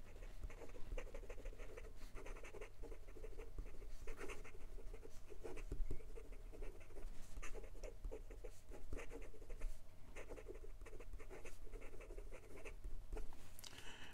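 Fountain pen with a steel architect-grind nib (Hongdian N6 "Long Knife") writing quickly on lined notebook paper: a continuous run of short, irregular pen strokes. A faint steady low hum lies underneath.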